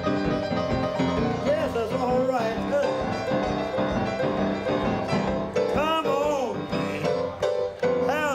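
Live rhythm-and-blues piano playing under a man's singing voice, which slides through long bending notes a couple of times.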